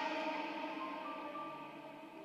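Soft background music of held, sustained notes that slowly fade.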